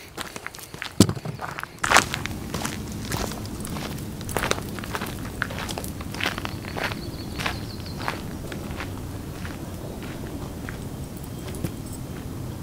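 Footsteps crunching on a loose, rocky gravel trail, a person and a dog walking. The steps are sharpest in the first few seconds and grow fainter as the walkers move away.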